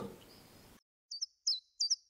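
Short bird chirps laid over dead silence: three quick high notes, each sliding sharply downward, about a third of a second apart, starting about a second in.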